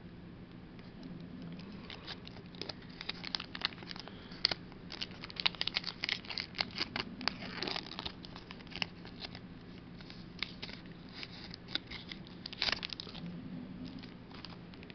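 Foil Pokémon booster pack wrapper being torn open and handled, a rapid run of crinkling crackles, densest through the middle with a short burst again near the end.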